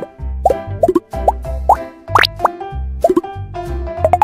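Children's music with a steady bass beat, overlaid by a string of cartoon pop sound effects: short rising blips several times a second, and one longer upward glide about two seconds in.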